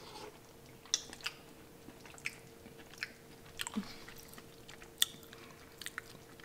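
A person quietly chewing a mouthful of pumpkin white bean chili: soft, scattered mouth clicks over a faint steady hum.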